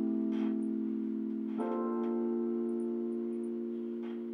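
Music: slow, held keyboard chords from a live song intro, a new chord coming in about one and a half seconds in and ringing on steadily.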